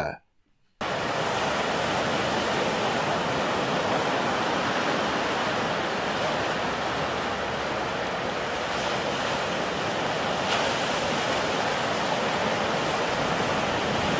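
Recorded ocean surf: a steady rush of waves breaking on a shore. It starts abruptly about a second in and cuts off sharply at the end.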